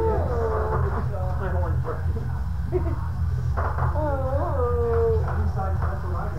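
A person's wordless, drawn-out voice sounds, the pitch rising and falling, with a long one from about four to five seconds in, over a steady low hum.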